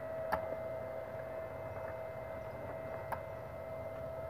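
A few light clicks as a metal clip and wires are handled at the terminals of a plastic-boxed electrofishing unit, one about a third of a second in and another near the three-second mark, over a steady faint high-pitched whine.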